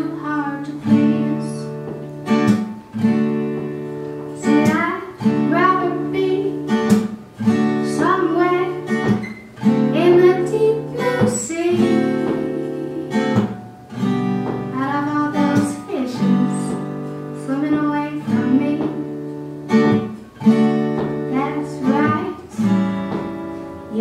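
A woman singing a song while strumming chords on a guitar, in a live solo performance. The guitar keeps up a regular strum throughout, and the voice comes in and out in phrases.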